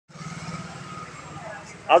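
Road traffic: a motor vehicle engine running steadily on the road close by, a low pulsing hum.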